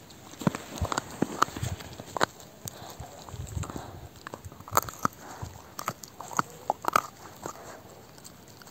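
A dog chewing and crunching raw beef brisket rib bones, an irregular run of wet bites and sharp cracks of bone, with several louder cracks in the second half.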